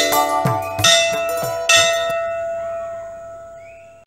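Intro music ending in bell-like struck notes, with strikes about a second in and again near the middle. The last note rings on and fades away steadily.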